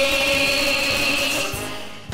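A musical-theatre song: singers hold one long note over the backing music, fading out near the end.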